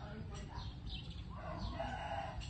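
A rooster crowing: one drawn-out call that begins about midway, with a few faint high bird chirps before it, over a low rumbling noise.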